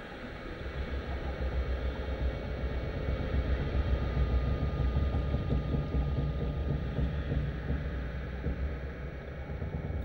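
Low underwater rumble with a hiss over it, swelling over the first few seconds and easing toward the end.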